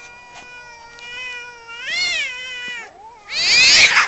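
Cats fighting: one long drawn-out yowl that swells and rises in pitch about two seconds in, then a loud harsh screech near the end as the two cats clash.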